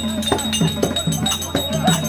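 Therukoothu folk-theatre accompaniment: a drum struck at about four beats a second, with metal bells or cymbals ringing. Underneath are held low reed notes that step between pitches.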